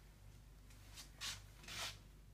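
Three brief rustles, the last two loudest, from a hand rubbing against a hand-held phone while it is moved. No alarm beep sounds.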